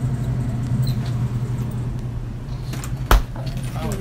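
Steady low hum of a supermarket's background, with one sharp knock about three seconds in.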